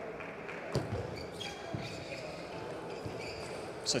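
Table tennis ball clicking off rackets and the table in a short doubles rally: a handful of sharp clicks, mostly in the first two seconds.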